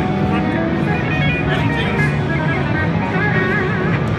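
Trade-show hall din: music playing over a steady hubbub of indistinct voices, with a wavering melody line running through it.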